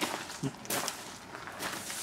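A few irregular footsteps on a gravel floor, with a brief voice murmur about half a second in.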